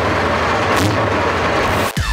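Soviet T-55 Bergepanzer recovery tank's V12 diesel engine running, loud and steady with a deep rumble. It cuts off abruptly at the very end.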